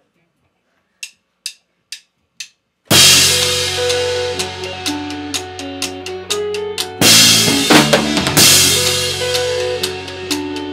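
Drummer's count-in of four stick clicks, then a math-rock band comes in loud with drum kit, cymbals and quick, clean electric-guitar note patterns over steady low notes. A big accented full-band hit lands about seven seconds in.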